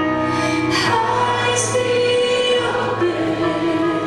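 A live worship band playing with several voices singing together, women's voices among them, over keyboard, guitars and drums.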